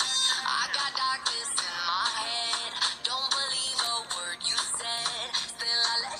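A pop song with a sung vocal line over the backing music.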